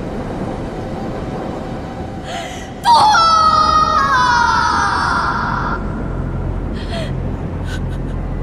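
A woman cries out in pain: a sudden loud cry about three seconds in, drawn out for nearly three seconds and falling in pitch, over a steady rushing background, with short gasping breaths near the end.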